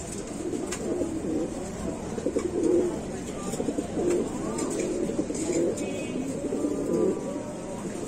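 Domestic fancy pigeons cooing: low, wavering coos from several birds overlapping without a break.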